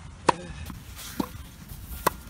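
Tennis racket striking a ball on a forehand: one sharp pop about a quarter second in, then a fainter knock about a second later.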